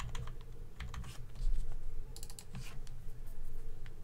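Computer keyboard keys tapped in short irregular runs: a few presses near the start and a quick cluster just past the middle, over a low steady hum. A dull low thump about a second and a half in is the loudest sound.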